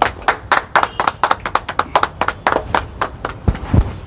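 A small group of people clapping their hands: quick, uneven claps, a few each second. A couple of low thumps come near the end.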